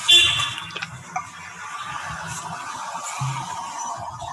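Background noise from open microphones on a video call. About half a second of high, ringing tone opens it, then a steady hiss with an uneven low rumble beneath.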